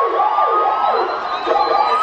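Siren sound effect played loud over a nightclub sound system during a hip-hop show: a wailing whoop that swoops up and down in pitch several times over a steady, slowly rising tone, with no beat under it.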